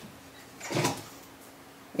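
A single brief knock or clatter a little under a second in, from a small product container being handled and set down; otherwise quiet room tone.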